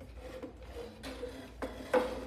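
Wooden chair being twisted round on a tile floor, its legs scraping and rubbing, to wind a string wrapped round them tight. A few sharp knocks come in the second half.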